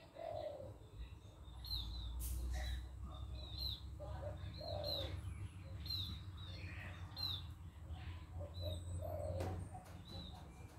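Birds calling: many short, high, falling chirps repeated throughout, with a lower call coming about three times, roughly every four and a half seconds.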